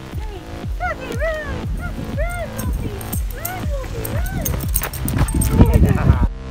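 A song with a steady beat plays throughout. Over it comes a run of short, rising-and-falling yelps, an excited dog yipping.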